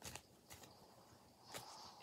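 Near silence with a few faint, light taps and rustles of an oracle card deck being shuffled by hand.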